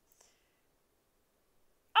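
Near silence: room tone, with one faint short click or breath just after the start.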